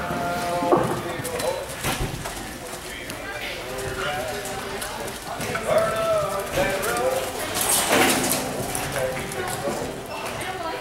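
A horse's hoofbeats on arena dirt during a barrel-race run, under people's voices calling out.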